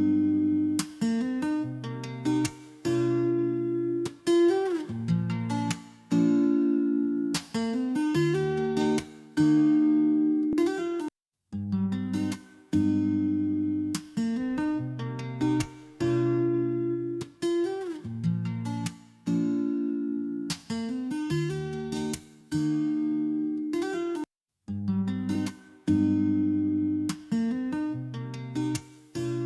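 Acoustic guitar recording playing chords and ringing notes, with a few sliding notes, heard through the Pulsar Audio Poseidon EQ plugin. It cuts out briefly twice.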